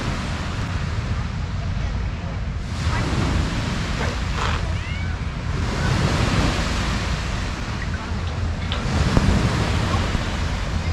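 Small waves washing onto a sandy lakeshore, rising and falling in gentle swells, with wind rumbling on the microphone.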